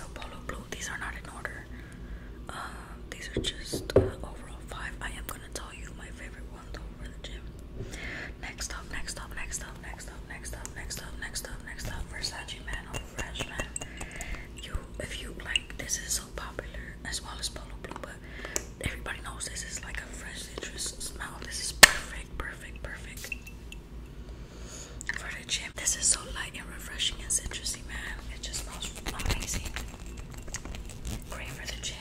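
Whispered talk with soft taps and clicks of fingers handling glass perfume bottles; a sharp click about 4 seconds in and a louder one about 22 seconds in.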